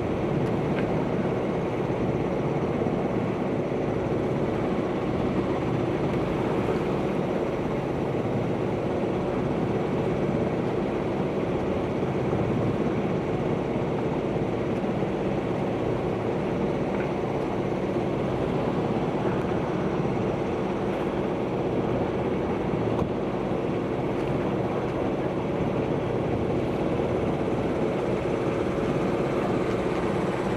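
A sailing catamaran's engine running steadily as the boat motors under way with its sails down, a steady drone with several held tones.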